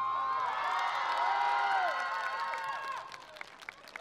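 Audience cheering and screaming in many high-pitched voices at the end of a stage performance. The cheering dies down about three seconds in, leaving scattered clapping.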